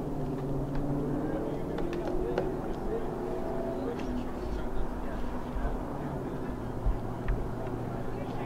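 Indistinct chatter of several people talking at once, with a low steady hum and rumble underneath.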